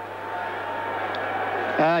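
Racecourse background noise, an even wash of crowd and track sound, swelling steadily, over a low steady hum. A man's voice comes in near the end.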